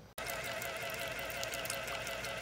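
Small peristaltic dosing pump motor running steadily with a wavering whine, starting abruptly just after the beginning, while water trickles out of its outlet tube.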